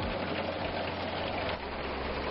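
Tractor-drawn root digger lifting a ginseng bed: loose soil pouring and rattling through the harvester's rod-chain sieve as a steady hiss, over the tractor engine's low, even hum.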